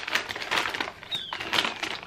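Paper takeaway bag rustling and crinkling as hands pull pita bread out of it, with a brief high squeak about a second in.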